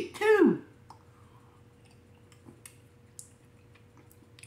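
A man's appreciative "mmm" hummed twice with falling pitch right at the start, then faint swallowing and small mouth and bottle clicks as he drinks from a plastic sports-drink bottle.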